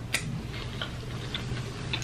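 Soft wet mouth clicks of chewing, a sharp one just after the start and then faint ones about twice a second, over a low steady hum.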